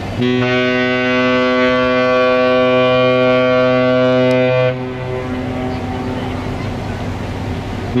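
An MSC cruise ship's horn sounding one long, low, steady blast of about four and a half seconds, which then stops. A second blast begins right at the end.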